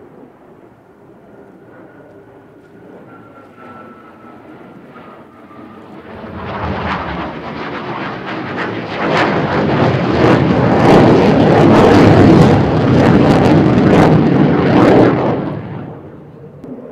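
Twin-engine F-15J Eagle jet fighter making a display pass: a faint, slightly falling jet whine at first, then the engine roar swells from about six seconds in to a loud, crackling peak that drops away near the end.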